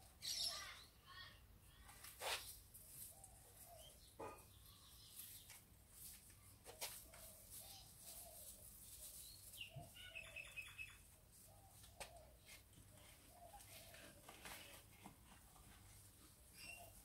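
Quiet rustling of leaves and stems as garden plants are handled and picked by hand, with occasional sharp snaps and clicks as stems are broken off.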